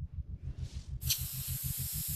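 Fuel injector spraying into an engine cylinder: a loud, sharp hiss starts about a second in, over the rapid low throbbing of the running engine.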